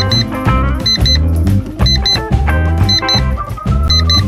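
Upbeat jazzy background music with a walking bass line, and a pair of short high beeps about once a second.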